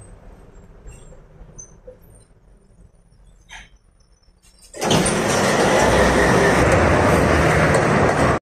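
Inside the tram car it is fairly quiet at first, with a low hum and a few faint clicks. About five seconds in, a loud, steady rush of street noise at the tram stop takes over suddenly, from the tram and road traffic.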